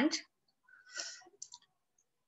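A woman's spoken word trailing off, then a soft breath with a few faint mouth clicks in a pause between phrases.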